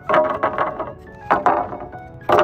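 Wooden boards knocking against each other as they are set down across wooden supports: two knocks about a second apart, each with a short wooden ring.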